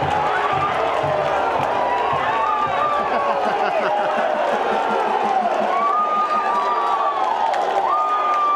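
A football stadium crowd cheering and shouting after a home goal, many voices at once at a steady level, with one long held tone near the end.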